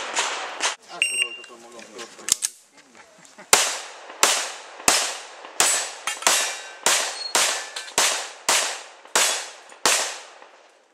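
Pistol shots fired in steady succession, about one every two-thirds of a second, a dozen or so from about a third of the way in, each with a short ringing tail. Before them, voices and a brief high beep.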